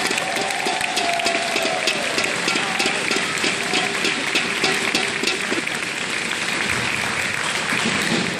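Audience applauding steadily, a dense patter of many hands clapping, with a voice or two calling out near the start.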